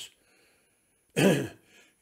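A man clearing his throat once, briefly, a little over a second in.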